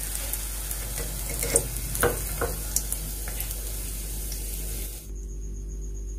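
Hot oil sizzling as gram-flour-battered potato koftas deep-fry in a steel kadhai, with a few light clicks of a slotted spatula against the pan as they are lifted out. The sizzle cuts off suddenly about five seconds in.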